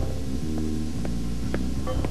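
Background music score: low, throbbing bass notes in a repeating pattern, a new note about every half second.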